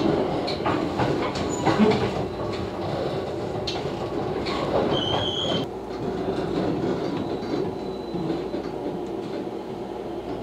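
Inside a JR West 227 series electric train running and slowing along a station platform: a steady rumble with rail clicks in the first seconds and a brief high squeal about five seconds in, after which the running sound drops a little.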